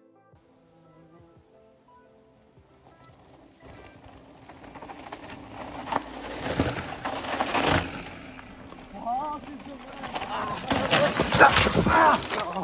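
Faint music at first. About three and a half seconds in, a mountain bike riding down a dry dirt trail comes in: tyres crunching and skidding through loose dirt with rattling from the bike, getting louder. A short shout comes about nine seconds in.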